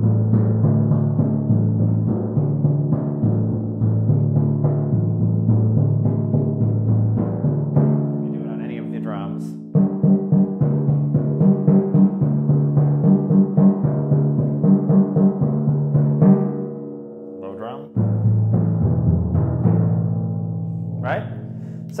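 Timpani played with felt mallets in a triplet exercise: three strokes on one drum, then three on the next, alternating between two pitches with the drums ringing on. The playing breaks off and starts again twice.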